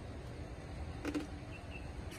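Outdoor background with a steady low rumble, a single short sharp sound about a second in, and faint high chirps repeating near the end.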